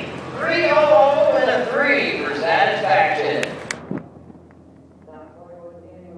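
A man talking over a public-address system for about four seconds, cut off by a couple of sharp clicks, then fainter speech.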